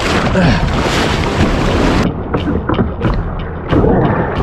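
Breaking surf and rushing water around a kayak, with wind buffeting the microphone. About halfway through the hiss drops away suddenly, and a run of splashes follows from the paddle and from waves slapping the hull as the kayak punches out through the shore break.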